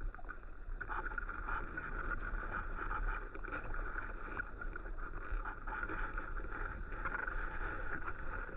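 Muffled underwater ambience picked up by a submerged camera: a steady hiss with a low rumble and scattered faint clicks.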